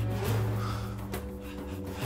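Dramatic background score: low, sustained held notes.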